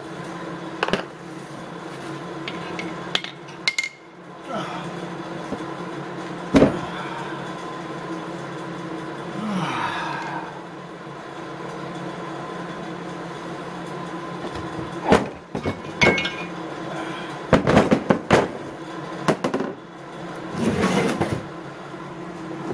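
Metal parts of a split Subaru boxer short block knocking and clinking on a workbench as the case halves and bolts are handled: scattered sharp knocks, the loudest about six seconds in and several more close together in the last third, over a steady background hum.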